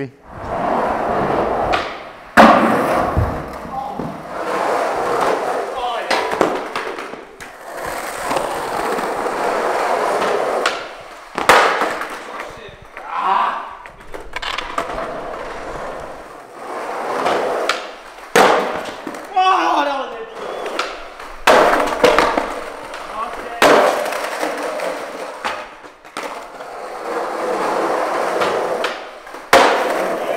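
Skateboard wheels rolling on rough asphalt, broken by several sharp tail snaps and landing impacts of street skating tricks.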